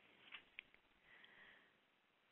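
Near silence in a pause between spoken passages, with a couple of faint clicks and a soft breath.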